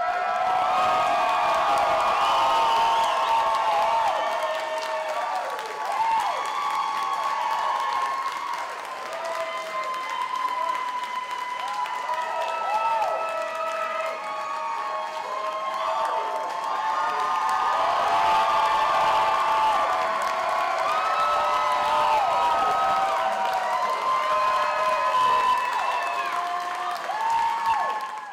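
Audience applauding, cheering and whooping without a break, with many voices calling out over the clapping.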